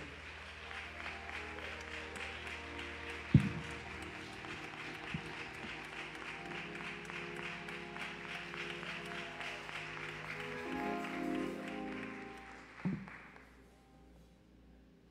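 Congregation applauding over sustained church keyboard chords. The clapping fades out near the end. A sharp knock sounds about three and a half seconds in.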